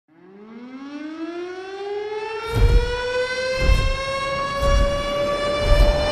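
Siren-like tone winding up in pitch over the first few seconds and then holding steady, as the intro of a dance track. From about two and a half seconds in, a heavy kick drum hits about once a second under it.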